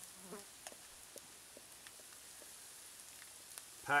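Vegetables frying in a pan over a campfire: a faint, steady sizzle, with scattered light clicks and scrapes as a knife works tuna out of a can into the pan.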